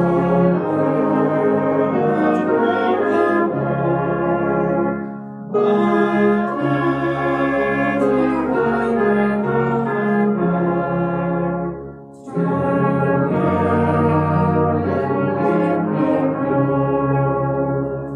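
Salvation Army brass band of tubas, euphoniums, horns and cornets playing a slow hymn tune in held chords. It plays three long phrases, with short breaks about five and twelve seconds in.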